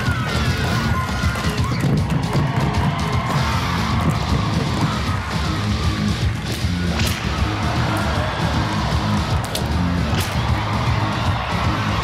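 A troupe of bombo legüero drums beaten fast and hard in a driving malambo rhythm over backing music, with sharp cracks cutting through several times.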